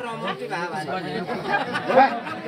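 Crowd chatter: several people talking over one another, with no music playing.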